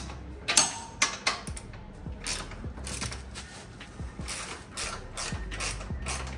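Hand wrench turning a motorcycle's rear-axle chain adjuster bolt, a series of short clicks at irregular intervals, while a loose drive chain is being tightened.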